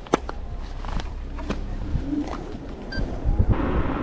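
Wind rumbling on a camera microphone, with a few sharp clicks and knocks in the first second and a half; about three and a half seconds in, a steadier rushing noise sets in.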